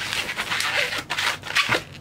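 A long latex modelling balloon (a 260) being handled and twisted into a small bubble by hand: a quick run of rubbing and crackling from the latex under the fingers.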